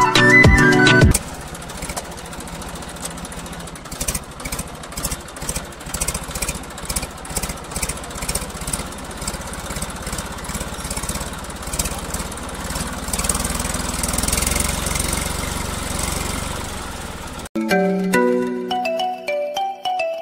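A small engine running with a rapid, uneven putter for about sixteen seconds, between music at the start and again near the end.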